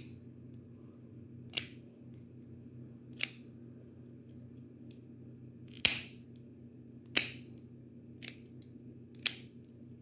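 Plier-style dog nail clippers snipping the tips off a dog's nails: six short sharp clips spaced a second or two apart, the loudest two in the middle.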